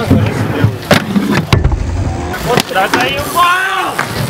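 Inline skate wheels rolling over concrete with a steady rumble, with several sharp clacks in the first half. Voices call out near the end.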